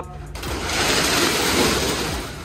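Corrugated metal roll-up shutter door rolling down. It makes a steady, noisy rush that starts about half a second in and swells.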